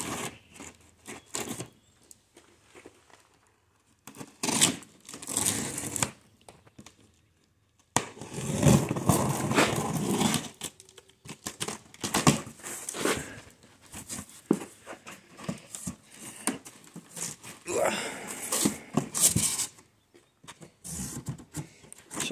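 Utility knife slitting packing tape along a cardboard box, then the cardboard flaps being pulled open and rustled, in irregular tearing and crinkling bursts with a short quiet gap partway through.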